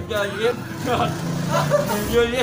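Excited voices of several people, without clear words.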